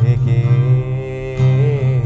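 Steel-string acoustic guitar strummed in a slow song, with a man's voice holding a long sung note that wavers near the end.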